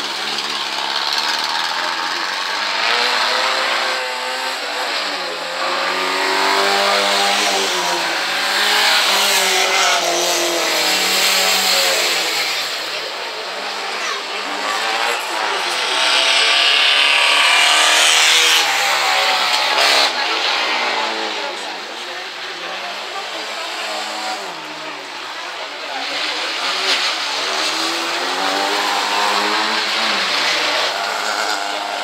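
Rallycross car engine revving hard, its pitch climbing and dropping again and again as the car is driven around the track, with a loud hissing stretch about two-thirds of the way through.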